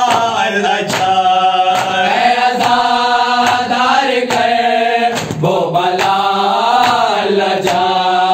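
A group of men chanting a noha, a Shia lament, in unison, with matam: open hands strike their chests together in a steady beat, a little more than once a second.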